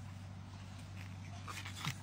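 Blue-and-gold macaw making a few faint clicks and short soft sounds near the end, over a steady low hum.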